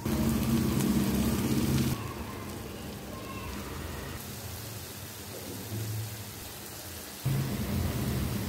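Diced potatoes frying in a pan, a steady hissing sizzle, with a loud low rumble over the first two seconds that stops abruptly and returns suddenly near the end.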